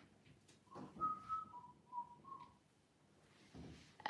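A person whistling a few short notes softly, one higher note followed by three slightly lower ones.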